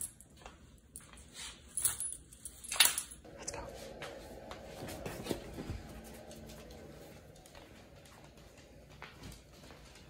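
Dogs moving about on a hardwood floor: a few sharp clicks and knocks in the first three seconds, the loudest near the three-second mark, then a softer stretch of scuffling that fades away.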